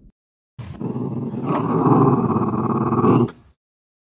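A dog growling for about three seconds, starting about half a second in, building, then cutting off abruptly.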